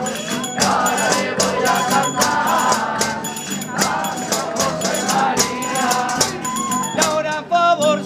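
Spanish folk ensemble playing an aguilando: group singing over a steady beat of shaken and struck hand percussion, about three strokes a second. A wavering, vibrato-like melody line comes in near the end.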